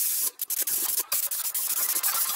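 Airbrush spraying red paint, a high hiss of compressed air with a few brief breaks as the spray stops and starts.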